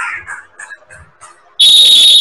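Referee's whistle blown in one loud, steady blast that starts suddenly about a second and a half in, after a stretch of faint court noise.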